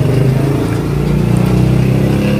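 A motor vehicle engine running close by, a steady low hum that shifts slightly in pitch about a second in.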